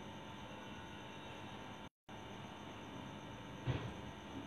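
Faint steady hiss and hum of the room and microphone, cutting out completely for a split second about halfway through, with one short soft sound near the end.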